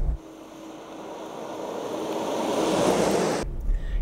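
A rushing, wind-like noise that swells steadily for about three seconds and then cuts off abruptly.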